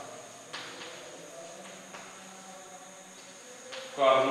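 Chalk writing on a blackboard: a few short taps and scratches of the chalk against the board over a faint steady hum.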